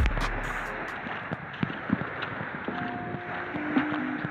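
Small waves breaking and washing up a sandy beach, with wind on the microphone, a steady rushing noise. Faint background music returns with a few held notes near the end.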